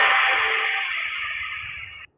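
Music fading out, its level falling steadily over two seconds, then cutting off abruptly.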